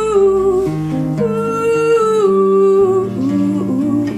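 A woman's voice sings long wordless held notes over an acoustic guitar being played, the melody stepping down lower near the end.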